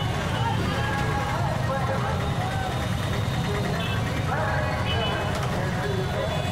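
Many motorcycle and auto-rickshaw engines running together in a slow-moving street procession, a steady low rumble under a crowd of men's voices.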